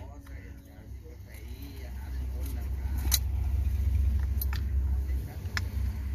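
Sharp metal clicks, four in all, as slip-joint pliers press and lever a steel snap ring into its groove on a starter motor's armature shaft. Under them a low rumble swells through the middle and eases near the end.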